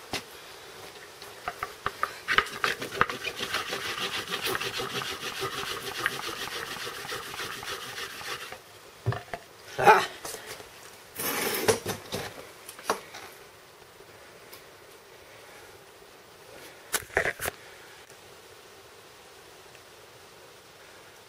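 Wooden board rubbed rapidly back and forth over a tightly wound cotton-and-ash fire roll on a plank: a fast, steady scraping for about eight seconds, working friction heat into the roll to make a coal. It then stops suddenly, and a few separate knocks and scuffs follow as the roll is handled.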